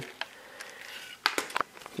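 A few small clicks from a screwdriver driving a screw into the plastic bottom cover of an MSI GT780 laptop: one just after the start, then a quick run of four or so about a second and a quarter in.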